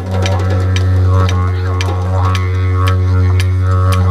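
Several didgeridoos played together in a low, steady drone, the overtones sweeping up and down in a wah-like pattern. Sharp percussion hits sound on top, a few per second.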